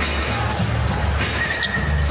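Basketball arena ambience: steady crowd noise with a basketball being dribbled on the hardwood court.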